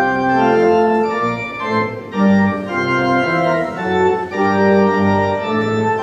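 Church organ playing a hymn tune in full sustained chords that move on about every half second.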